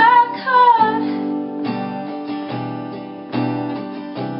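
Acoustic guitar strummed while a woman sings a line that ends about a second in; after that the guitar goes on alone, a chord struck roughly every second.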